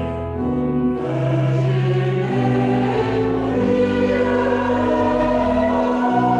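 Church choir singing a carol in parts: held chords that move on about every second, with a brief breath between phrases just after the start.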